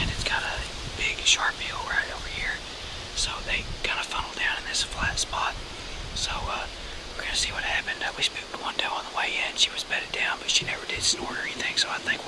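A man talking in a whisper throughout, with hissing consonants.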